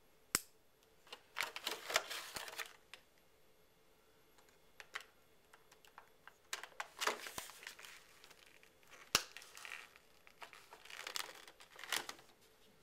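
Clear plastic blister packaging crinkling and crackling in several bursts as it is handled and pulled apart, with a few sharp plastic clicks.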